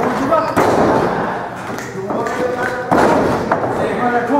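Two heavy thuds on a wrestling ring, the first about half a second in and the second near three seconds, each followed by the boom of a large hall. Voices come through between them.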